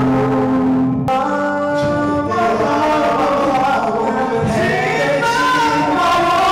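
Vocal group singing a song into microphones, several voices together in harmony, amplified through a PA.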